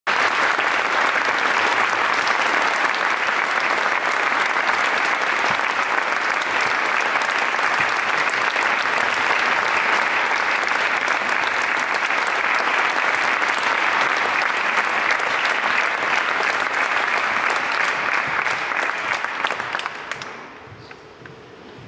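Audience applauding steadily, a dense crackle of many hands clapping that dies away near the end.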